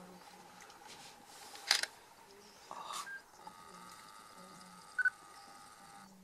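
Camera handling sounds: a sharp click about a second and a half in, and a short electronic beep with a click near the end, over faint background hiss.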